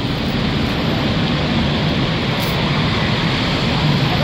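Steady outdoor street noise at a roadside stall: a continuous low rumble of passing traffic with no single event standing out.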